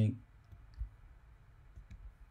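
A few faint, sharp clicks at a computer during a pause in speech, over a low room background.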